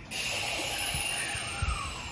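A burst of compressed air venting from a Kintetsu electric train's air system: a sudden loud hiss with thin whistling tones falling in pitch, dying away over about two seconds.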